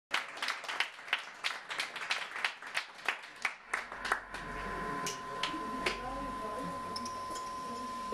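Scattered hand clapping from a small audience, about three claps a second, dying away about four seconds in. Then a single steady high electronic tone holds, with quiet voices underneath.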